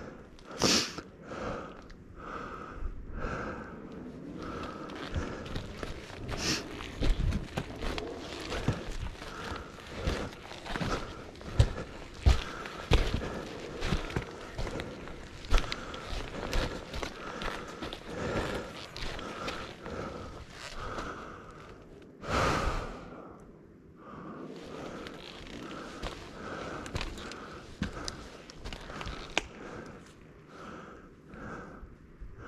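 Footsteps of a rider in riding boots walking down a rocky, rooty forest trail, with heavy breathing close to the helmet microphone. Near the two-thirds mark there is one louder rush of breath or noise.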